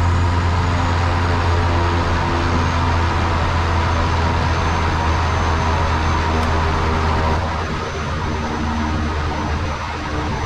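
Pilatus PC-6 Porter's turboprop engine running steadily on the ground, heard from inside the cockpit, with a deep steady hum and a faint high whine. About seven and a half seconds in it eases a little quieter as it settles to idle for the engine cooldown before shutdown.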